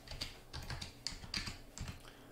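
Computer keyboard keystrokes: a quick run of separate key clicks as a word is typed out.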